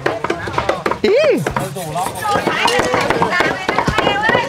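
Rapid, steady knife chopping on a wooden block, several strokes a second, as meat is minced by hand.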